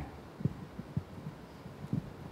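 Handling noise from a handheld microphone as it is lowered and set down on the table: a few soft, low thumps over a faint hum.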